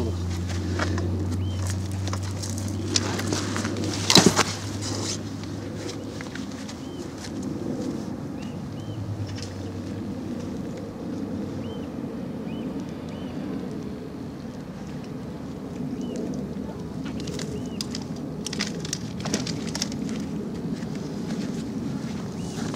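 Outdoor ambience: short bird chirps now and then over a steady low rumble, with a sharp knock about four seconds in and a few lighter clicks near the end.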